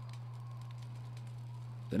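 A steady low hum over faint hiss, unchanging through the pause.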